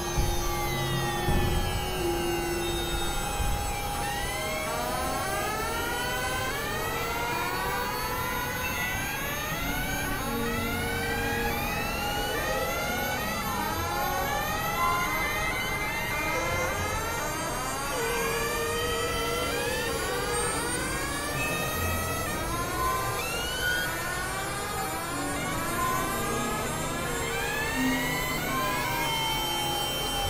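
Experimental synthesizer drone music: dense overlapping rising pitch sweeps, siren-like, a couple each second, over held tones and a low rumbling bed.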